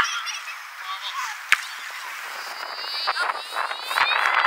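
Young footballers shouting high and shrill on the pitch near the end, over a steady hiss of strong wind on the microphone, with a single sharp ball kick about one and a half seconds in.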